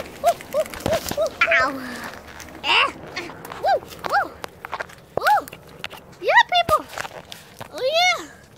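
Children's voices making short, high 'ooh' calls that rise and fall in pitch, a quick run of them at the start and then single calls spread through, with rustling and knocks from hands handling paper and the camera.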